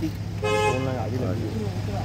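A vehicle horn sounds once, a short steady toot of about half a second, starting about half a second in, over a steady low hum.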